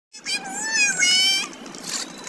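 A high-pitched, wavering cry lasting about a second, just after a cut in the sound.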